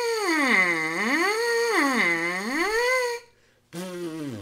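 A trumpet mouthpiece buzzed on its own: a loud, duck-like pitched buzz that swoops down low and back up twice, then stops about three seconds in.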